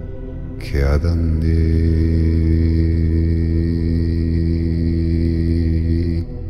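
A deep voice chanting one long held mantra tone, starting about a second in after a brief sweeping onset, over a steady meditation-music drone.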